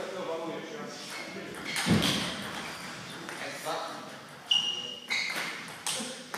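Table tennis ball being hit back and forth at the start of a rally: three sharp clicks in the last second and a half, the first with a short ringing ping, in a reverberant hall with background voices.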